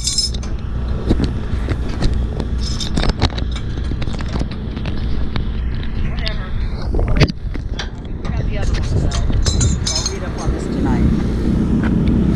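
Handling noise from a GoPro camera held in the hand: fingers rubbing and knocking right on the camera body, giving many short knocks and scrapes over a steady low rumble.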